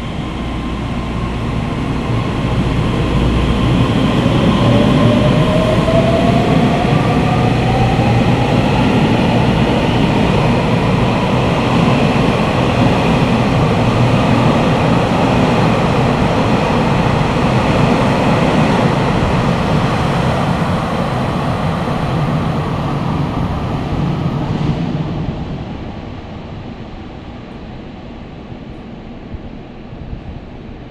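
Taiwan Railways EMU3000 electric multiple unit pulling away and running past in an echoing underground station. Its traction motor whine rises in pitch over the first several seconds as it accelerates, over the rumble of wheels on rail. The sound fades away about 25 seconds in as the train leaves.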